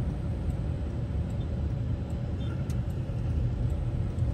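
Steady low rumble of road and engine noise heard from inside the cabin of a moving vehicle.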